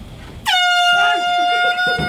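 An air horn blasting one long, loud, steady note, which dips slightly in pitch as it starts about half a second in and keeps going for about a second and a half.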